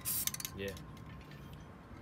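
Aerosol spray-paint can hissing in a short burst as paint is sprayed onto water, with a few light metallic clicks, then the spray stops.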